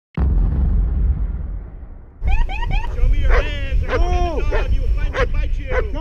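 A sudden loud rush of noise that fades away over about two seconds. Then a police K9 barks in a quick run of short, excited barks over a low rumble.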